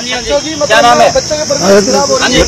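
A steady high-pitched insect buzz with voices talking over it.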